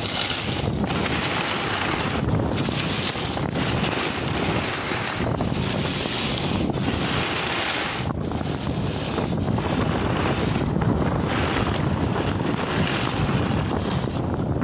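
Snowboard sliding through deep snow with a steady rushing hiss, mixed with wind buffeting the microphone as the rider moves downhill. The rush rises and falls irregularly.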